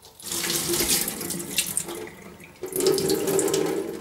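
Acid descaling solution being poured from a jug through a funnel into a copper boiler heat exchanger, running and splashing, with a short lull about two seconds in before it flows again.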